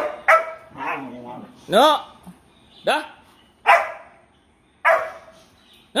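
Short, sharp barks from two dogs playing, about one a second, each with a quick rise and fall in pitch. A person's voice says "no" among them.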